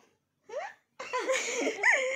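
Laughter and giggling while a baby is played with: a short rising vocal sound about half a second in, then a louder run of high-pitched, breathy laughing from about a second in.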